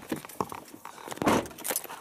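Handling noise of a person climbing into a small car's driver seat: scattered clicks and knocks, with a louder rustling rush a little past the middle.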